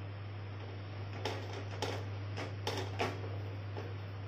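Steel spoon spreading dosa batter in circles on a non-stick pan, with about five short clicks or scrapes of metal on the pan in the middle of the stretch, over a steady low hum.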